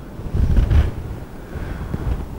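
Low, muffled rumble of clothing rubbing against the microphone as a man turns to the whiteboard, loudest about half a second in.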